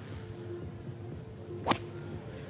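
A golf club striking a ball off the tee: one sharp crack near the end, over a faint steady low hum.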